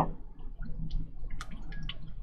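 A Chinese ink-painting brush being wetted in a water bowl: a few small drips and light splashes, scattered through the second half, over a low steady hum.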